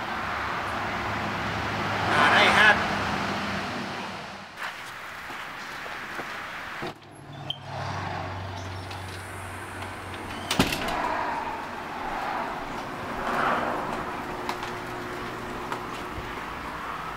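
Faint, indistinct voices over steady background noise, with one sharp knock about ten and a half seconds in.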